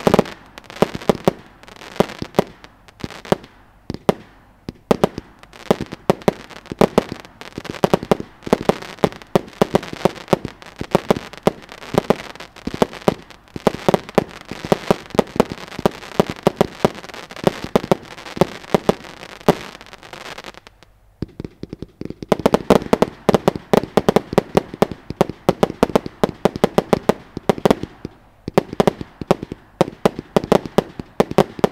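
Wolff Extrema firework cake firing a rapid, dense string of shots and bursts with crackle. The shots break off briefly about two-thirds of the way through, then start again just as densely.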